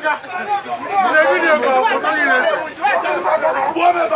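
Loud talking, with several voices speaking over one another.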